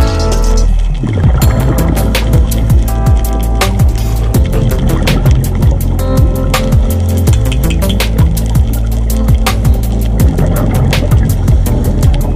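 Background music: a track with a steady fast beat over heavy bass.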